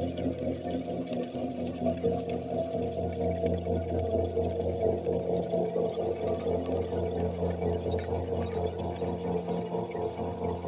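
Electronic drone music: a steady low drone under a stack of held tones, with a fast fluttering pulse and scattered crackling clicks on top.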